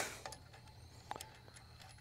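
A few faint metallic clicks from a wrench working the packing nut on an acetylene cylinder valve as it is tightened to stop gas leaking past the valve stem.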